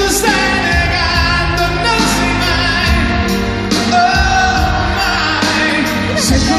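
Live concert music from a male vocal group: singing with wavering held notes over an orchestra, piano and drums.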